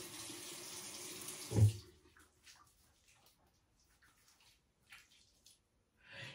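Bathroom tap running steadily into the sink, stopping about two seconds in. After that there are only a few faint splashes and rubs as hands wash the face.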